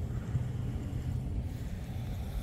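A low, uneven rumble with no distinct events and no clear pitch.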